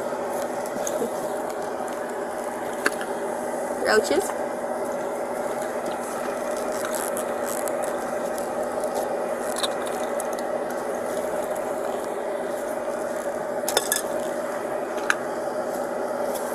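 Small items being handled while a leather purse is searched: a few sharp clicks and knocks, over a steady low hum. A brief laugh comes about four seconds in.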